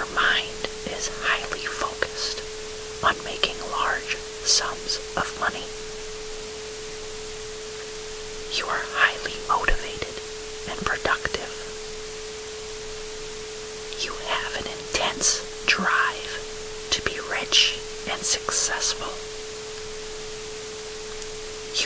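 Steady hiss with a constant 432 Hz tone underneath, over which a voice whispers short affirmation phrases in three spells.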